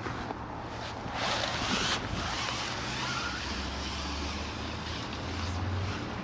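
Hobie Tandem Island mast and furled sail being slid out of its fabric sleeve: a rustling swish of fabric, loudest for about a second near the start. Under it is a steady low hum of outdoor background noise.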